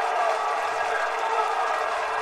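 Football match ambience: a steady wash of pitch-side noise with distant voices shouting.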